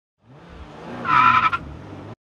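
Sports car engine revving hard in one short burst, with a high squealing tone at its loudest point and lower tones gliding beneath. The sound cuts off abruptly.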